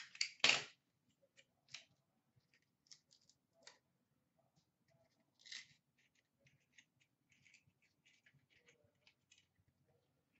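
Trading cards and pack wrappers being handled at a counter: a sharp snip or crackle about half a second in, then faint scattered clicks and rustles of cards being slid and flipped.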